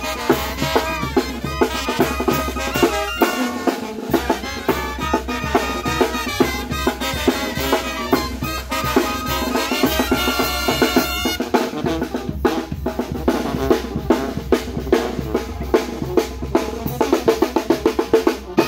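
A Oaxacan brass band (banda) playing a march-like tune, the horns carrying the melody over snare and bass drum. About eleven seconds in, the horns stop and the drums keep going alone with a rapid roll-like beat.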